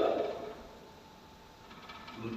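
A man's amplified voice trailing off, followed by a short pause of faint room tone.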